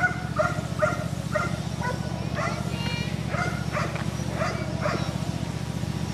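A dog barking repeatedly, about two barks a second, over a steady low hum.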